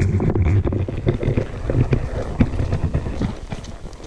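Wind buffeting the microphone in a low rumble, with a mule's hooves stepping irregularly through dry leaves and sticks on a forest floor.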